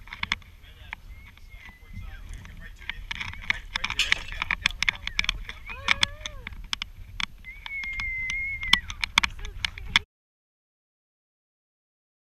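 Low wind and water rumble on an action-camera microphone at the bow of a small aluminium boat, broken by many sharp knocks and clicks, with a person's high voice calling out a few times. The sound cuts off suddenly about ten seconds in.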